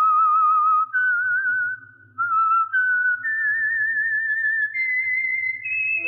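A lone whistled melody with a strong vibrato, the show's signature whistled theme, moving note by note and climbing in pitch toward the end.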